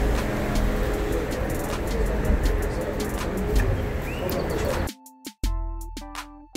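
Outdoor street noise with a heavy low rumble and scattered clicks. About five seconds in it cuts off sharply into background music with bass notes and a steady beat.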